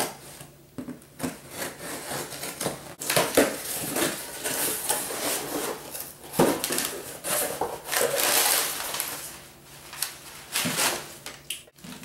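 A cardboard shipping box being opened by hand: flaps pulled back and paper packing rustled and crumpled as it is pulled out, in a run of uneven scrapes and rustles with a few sharp rips.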